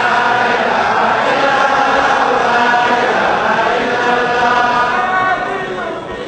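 A congregation chanting Islamic dhikr together, many voices in one sustained loud chant that drops back a little just before the end.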